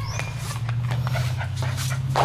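German Shepherd puppy giving a short high whine at the start, with scattered light clicks like claws on a tiled floor, over a steady low hum.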